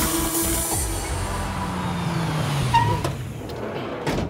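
A passenger van pulling up and slowing, its engine note falling as it comes to a stop, with a short brake squeal near the end.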